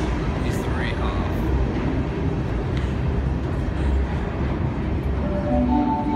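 Sydney Trains Tangara electric train pulling away from an underground platform into the tunnel: a steady low rumble of the wheels and motors that holds at an even level.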